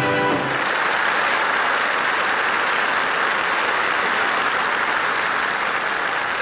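The band's final held chord cuts off about half a second in, followed by steady applause from a studio audience.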